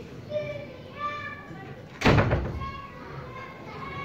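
Faint voices in the room during a pause between recited verses. About halfway through comes one sudden loud thump.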